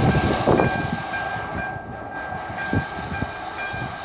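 ČD class 854 "Hydra" diesel railcar train running away over the crossing, its wheels knocking dully over the rail joints as it fades. Over it runs a steady high warning tone that keeps breaking off and resuming, typical of the level crossing's electronic warning sounder still going.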